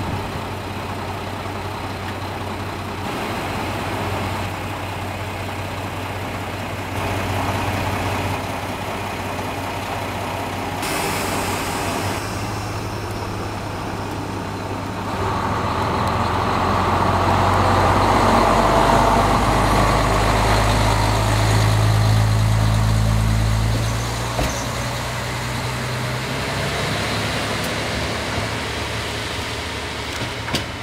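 Diesel engine of the Asa Kaigan Railway ASA-300 railcar No. 301 running at idle. About halfway through it revs up and grows louder as the railcar pulls away, then drops back near the end.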